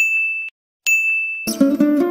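Two bright dings of a notification-bell sound effect, one at the start and one just under a second in, each ringing briefly and then cut off abruptly. About a second and a half in, a short music jingle begins.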